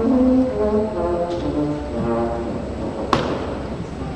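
Woodwind quintet instruments, the French horn among them, playing a few short separate notes, with one sharp knock about three seconds in.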